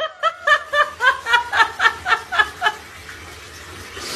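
High-pitched giggling: a quick run of short pitched bursts, about five a second, that stops a little under three seconds in and leaves only a faint even background.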